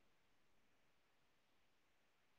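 Near silence: only a faint, even background hiss.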